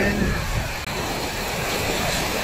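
Fast-flowing floodwater rushing steadily.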